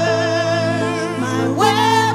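Live praise-and-worship singing with keyboard accompaniment: voices hold a long note over a steady low chord, then a new phrase enters higher about one and a half seconds in.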